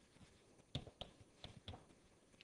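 Faint chalk taps on a blackboard as words are written: about four short, sharp clicks in the second half.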